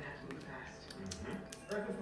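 Faint dialogue and soundtrack from a television drama, with speech building near the end and a few sharp clicks scattered through.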